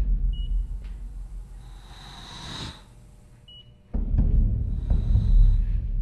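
Tense dramatic background score: low rumbling with a rising swell of hiss that fades out before the middle, then a deep rumble cutting back in suddenly about four seconds in. Two short high beeps sound about three seconds apart.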